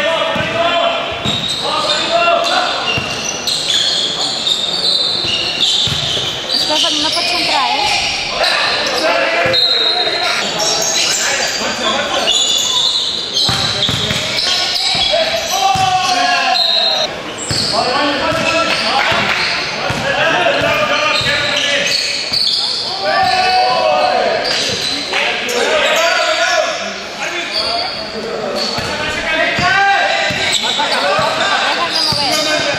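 Basketball game in a large, echoing sports hall: the ball bouncing on the court amid voices of players and spectators calling out.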